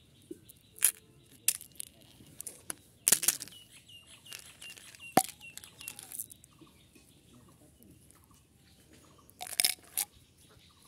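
Hands handling small plastic candy containers and a candy wrapper: scattered clicks, crinkles and rustles, with a burst of rustling about three seconds in, a single sharp click about five seconds in and more rustling near the end.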